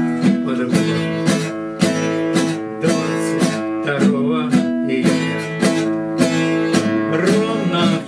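Acoustic guitar strummed in a steady rhythm, ringing chords.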